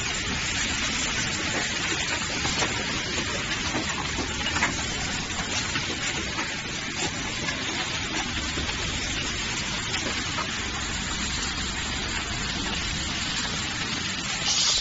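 Running automatic valve packaging line: a steady machine hiss with a few light clicks from its mechanisms.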